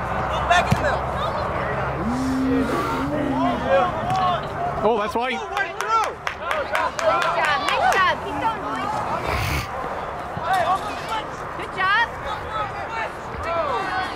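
Scattered, overlapping shouts and calls from soccer players and sideline spectators on an open field, no words clear, going on throughout.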